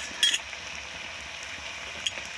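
Meat frying in a two-handled iron kadai over a wood fire, a steady sizzle, with a single sharp metallic clink about a quarter of a second in.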